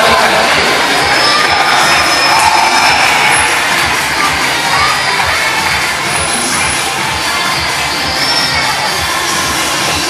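Crowd of children and adults cheering and shouting together, a dense mass of overlapping voices, easing a little after the middle.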